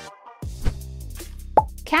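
Background music stops briefly, then an electronic beat starts about half a second in, with low thumps and a short, falling pop-like sound effect just before a voice begins at the very end.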